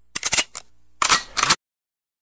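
Two short bursts of rapid gunfire, the second about a second after the first, then the sound cuts off abruptly.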